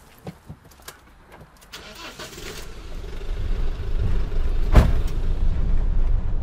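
Motorhome engine running and the van moving off, its low rumble building over a couple of seconds and then holding steady, with a single thump near the end.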